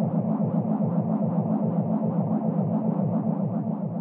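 An intro sound effect: a steady low rumbling buzz that pulses rapidly, about eight pulses a second, like an engine sound.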